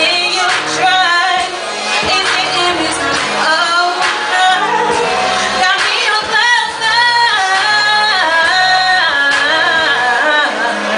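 A woman singing live into a handheld microphone, with long held and bending notes, over an instrumental backing with a repeating bass line.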